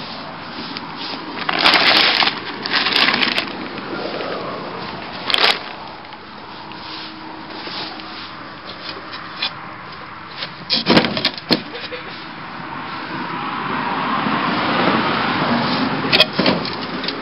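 Plastic tarp rustling and crinkling in bursts as it is handled and pulled back, then a quick run of sharp knocks of wood about eleven seconds in.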